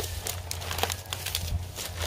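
Fresh green coconut palm leaflets rustling and crackling as they are bent and threaded through a woven roof panel by hand, in a run of short, irregular crackles over a steady low hum.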